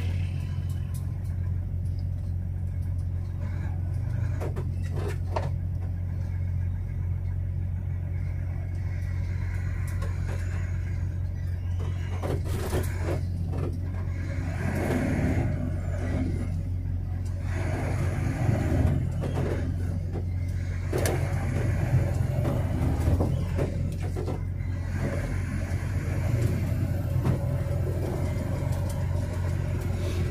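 Truck engine running steadily, heard from inside the cab as a low drone while the truck drives slowly, with scattered short knocks and rattles.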